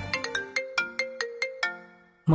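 A mobile phone ringing with a melodic ringtone: a tune of short plucked-sounding notes, about four or five a second, growing fainter toward the end.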